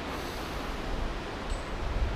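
Steady rushing of a river running high.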